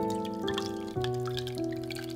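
Egg-and-milk batter pouring from a bowl into a frying pan, with wet dripping and splattering that starts right at the beginning, over background piano music.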